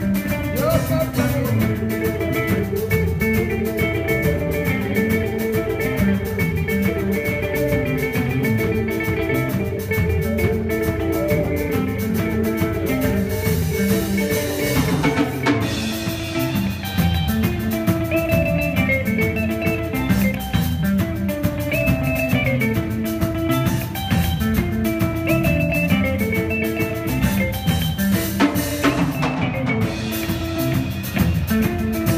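Live rock band playing an instrumental passage: two electric guitars play repeating melodic figures over electric bass and a drum kit.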